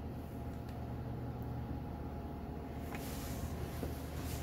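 Steady low hum of room background noise, with a faint sharp click about three seconds in.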